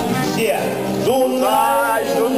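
Live folk song: a man singing into a microphone over accordion and acoustic guitars, his voice entering on a long wavering note about a second in.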